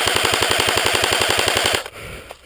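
Airsoft rifle firing a rapid full-auto burst of evenly spaced shots, lasting almost two seconds and cutting off suddenly near the end.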